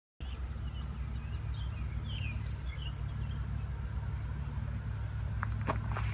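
Steady low machine hum. Birds chirp over it during the first few seconds, and a few sharp clicks come near the end.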